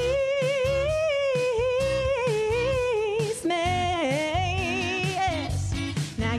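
Female pop-soul vocalist belting two long held notes with vibrato, the second ending in a slide down, over a recorded backing track with a steady drum beat.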